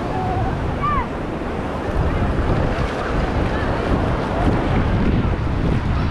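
Surf washing up on a sandy shore, with wind buffeting the microphone and the mixed voices of a beach crowd; a short high-pitched call or shout rises above it about a second in.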